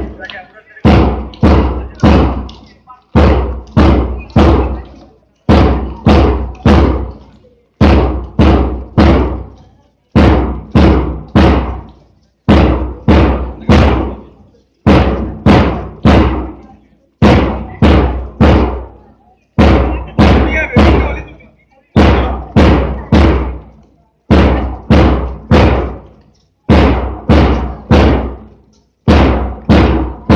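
A drum beaten loudly in a steady marching cadence: groups of about four deep beats that repeat every two and a half seconds or so, keeping time for a march-past.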